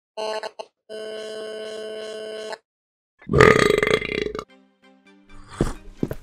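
A short musical jingle: a brief tone, then a held tone of about a second and a half. About three seconds in comes a loud human burp lasting about a second, followed by a few faint clicks near the end.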